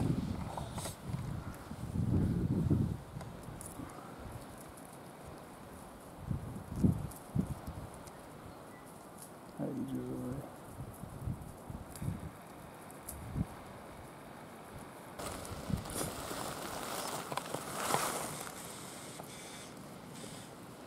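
Wind gusting on the microphone in swells, with a few handling knocks and a short low murmured voice about ten seconds in.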